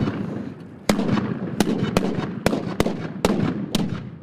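Japanese matchlock guns (hinawajū) fired by a line of gunners in a ragged rolling volley: seven sharp shots about half a second apart.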